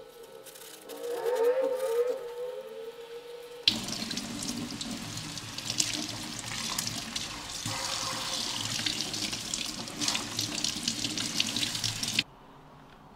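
A kitchen tap runs water onto a metal mesh in a steel sink. The rush starts abruptly about four seconds in and keeps up steadily. Before it there is a wavering tone.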